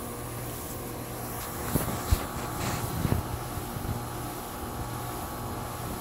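Crompton Greaves High Breeze ceiling fan running normally: a steady motor hum with the rush of air off its blades. A few faint knocks come about two to three seconds in.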